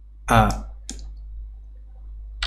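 A short spoken syllable about a quarter second in, then a computer mouse click just before the one-second mark, over a steady low electrical hum.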